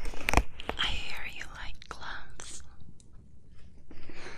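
Close-miked whispering, with a couple of sharp clicks about a third of a second in.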